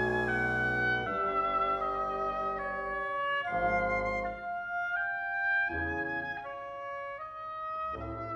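Symphony orchestra playing a slow passage, clarinets carrying a melody of held notes that moves step by step over low sustained chords. The low chords break off about a second in and return briefly twice.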